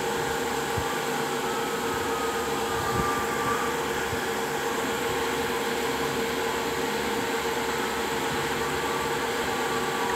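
A steady droning hum with one constant tone under an even hiss, and a single faint knock about three seconds in.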